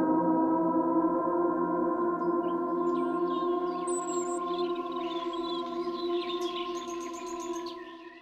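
The track's final sustained chord rings on and slowly fades out. High chirping sounds flutter over it from about two seconds in until shortly before the end.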